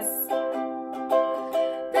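A plucked string instrument playing chords, the notes changing every half second or so, as instrumental accompaniment to a song between sung lines.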